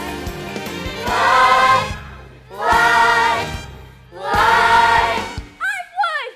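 A stage cast singing together in chorus over a band with a drumbeat, in three loud held phrases. Near the end the singing stops and short voice calls with a falling pitch follow.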